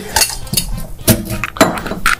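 Two-piece stainless-steel cocktail shaker being broken open and handled just after shaking with ice: a few sharp metallic clinks and knocks.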